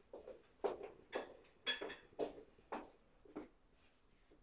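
Footsteps on a hard floor, about two a second, growing fainter as someone walks away carrying a tray, with a light clink of dishes among them.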